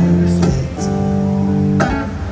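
Amplified acoustic guitar strumming chords through a concert PA, a new chord struck about half a second in and another near the end, the notes ringing on between strums.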